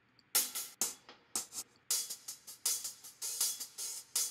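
Hi-hat loop sample being auditioned: crisp hi-hat strokes in a syncopated pattern. They start after a brief gap and get busier about two seconds in.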